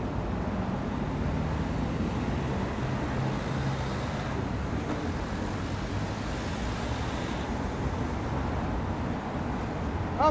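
Steady road traffic noise, an even low rumble from vehicles on the street.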